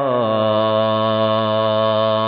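A man's voice chanting in the melodic style of a waz sermon, holding one long steady note after a slight drop in pitch at the start.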